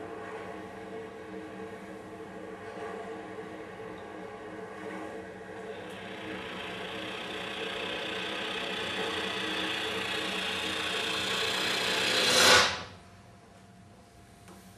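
Cello bowed with heavy pressure: sustained tones under a grating, scratchy bow noise that swells steadily to a loud peak near the end and then cuts off abruptly.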